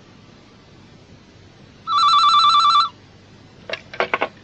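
A telephone rings once: a trilling electronic ring lasting about a second. A few sharp clicks follow near the end.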